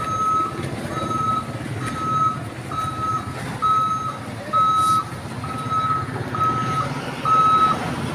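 A vehicle's reversing alarm beeping steadily, one long single-tone beep about every second, over the low rumble of street traffic.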